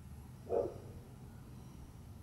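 A single short animal call, about half a second in, over a faint steady low rumble.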